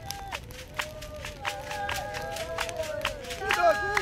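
Several San voices singing a chant in overlapping held notes over sharp rhythmic beats, about four a second. More voices join and it grows louder near the end.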